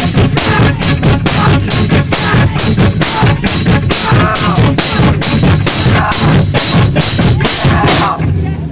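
Live band playing loud, with a fast, steadily hammering drum kit and heavy bass drum, cutting off abruptly at the very end.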